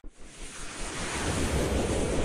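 Rising whoosh transition effect: a rushing noise swells up from near silence and grows louder, with a sweep climbing in pitch in the second half.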